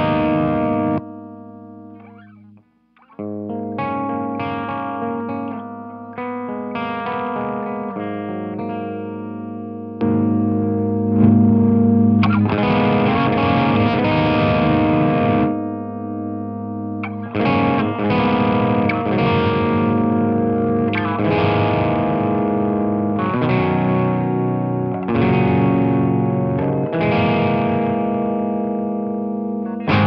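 Epiphone G400 electric guitar played through a Danelectro Surf n Turf compressor pedal. A chord rings and fades almost to silence about three seconds in, then chords are struck one after another and left to ring, louder from about ten seconds in.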